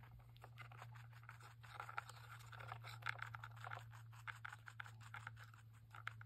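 Faint, rapid scratchy nibbling and scraping as a small rabbit eats from a plastic bottle cap and nudges it across a plastic seat.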